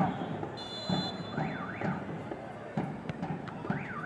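A referee's whistle gives one short, steady blast about half a second in, signalling the free kick. Rising-and-falling whistled calls and players' shouts sound around it.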